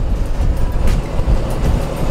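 Wind buffeting the microphone on a sailboat's deck, a loud, uneven low rumble, with a faint tick about a second in.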